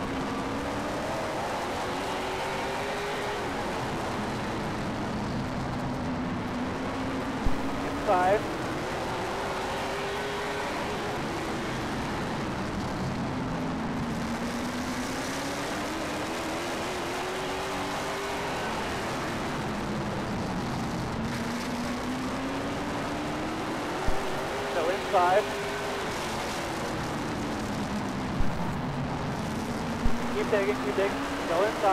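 Late model stock car's engine heard from inside the cockpit while lapping a short oval, its pitch rising on each straightaway and dropping into each turn, about every seven to eight seconds. Two short bursts of two-way radio chatter cut in, about a third of the way in and again near the end.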